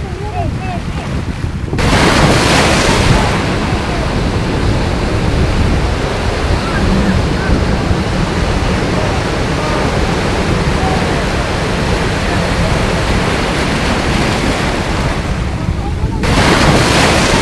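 Surf breaking and washing in a steady rush, with wind on the microphone. The rush jumps louder about two seconds in.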